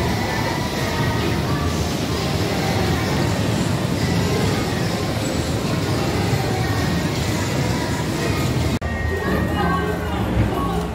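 Busy indoor amusement-arcade din: a kiddie car ride rumbling steadily around its track, with music and voices mixed in. The sound drops out briefly near the end.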